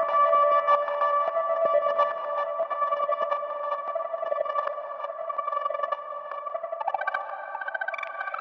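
Ambient electronic music: sampled harp notes from an Elektron Digitakt run through Chase Bliss Mood and EarthQuaker Avalanche Run delay and reverb pedals, held as sustained ringing tones that slowly fade. Sparse short clicks sound in the first couple of seconds, and a fast fluttering repeat comes in near the end.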